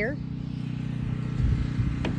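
An engine running steadily, a low even hum, with an uneven low rumble beneath it.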